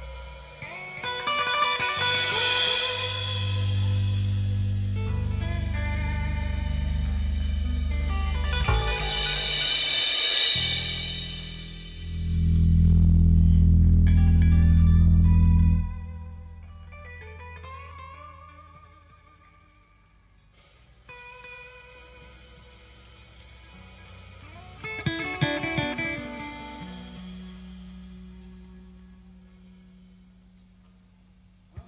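Rock band's instrumental intro: electric guitar over sustained low bass notes, with two loud swells in the first half. The second half drops to a quieter, sparser passage of guitar notes.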